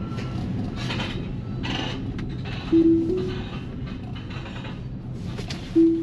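Steady low road and tyre hum heard from inside a Tesla Model Y's cabin as it creeps along. A short loud tone, stepping up slightly in pitch, sounds about three seconds in, and a similar tone comes near the end.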